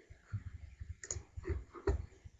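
Computer mouse clicking several times, with sharp clicks about one second in, half a second later, and just before the end.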